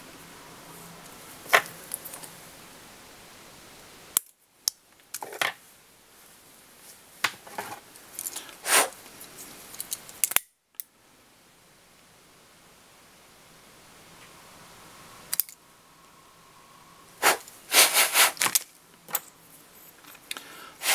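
Scattered small clicks, taps and handling noises of fly-tying tools and materials being picked up and set down at the bench, with a cluster of sharper clicks near the end.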